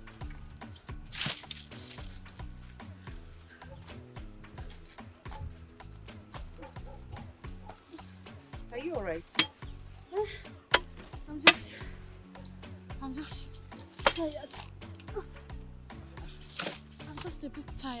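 Soft background music runs under the splash and slosh of clothes being hand-washed and rinsed in a bucket of water. A few sharp clicks or knocks stand out around the middle and are the loudest sounds.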